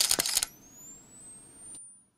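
Camera sound effect: a quick run of shutter clicks, then the rising high-pitched whine of a camera flash charging up.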